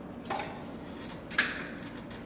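Two short clicks, the second louder, as a thick stack of leather is handled and set under the presser foot of an industrial leather sewing machine, over a low steady hum. The machine is not yet sewing.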